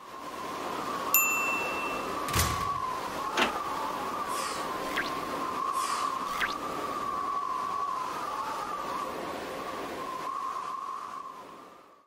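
End-screen sound effects: a bright ding about a second in, then two sharp hits and a couple of falling whooshes with small clicks, over a steady, slightly wavering hum that fades out at the end.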